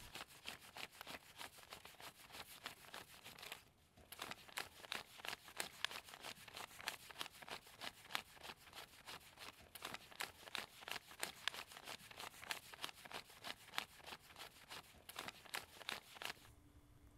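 Stack of paper banknotes being counted by hand: soft, rapid flicks of bills, several a second, with a brief pause about four seconds in.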